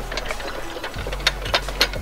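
Wooden boards knocking and clattering a few times as they are grabbed and shifted, with a low steady hum underneath.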